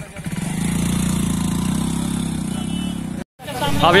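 A vehicle engine running steadily at idle. The sound cuts off abruptly a little past three seconds in, and a man's voice then begins.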